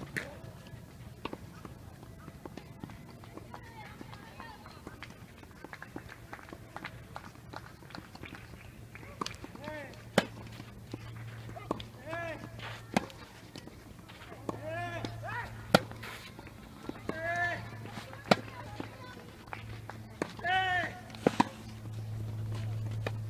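Tennis ball struck by rackets on a clay court: sharp pops, a few quiet ones early and then about one every two to three seconds once a rally gets going. A player's short shout or grunt comes just before several of the hits.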